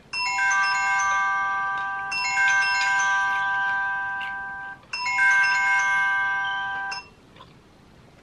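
Timer alarm going off: a chiming, ringtone-style melody of clear bell-like notes, marking that the challenge time is up. It plays through once, starts again after a short break and stops about a second before the end.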